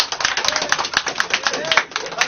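Scattered hand claps from a few seated people, several sharp, irregular claps a second, with some laughter among them.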